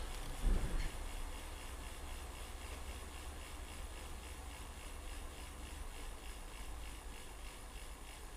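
Faint handling noise on a bicycle as its front grip shifter is worked: a brief knock about half a second in, then a steady low rumble with light rubbing.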